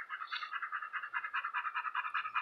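A rapid, evenly pulsed trill of about a dozen pulses a second, high in pitch and steady throughout.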